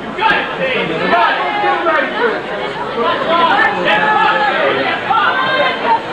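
Many people talking over one another: a steady crowd chatter of several voices with no single speaker standing out.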